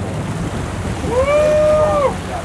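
Steady wind, sea and boat-engine noise on the microphone, and about a second in a person lets out a long, high-pitched excited yell that rises, holds for about a second and falls away.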